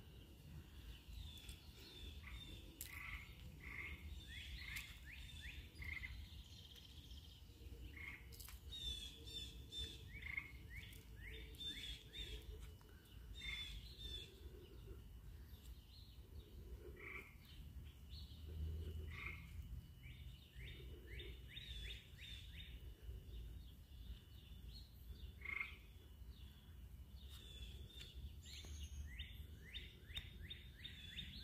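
Faint chorus of small birds chirping outdoors, short quick notes repeated in bunches throughout, over a low rumble.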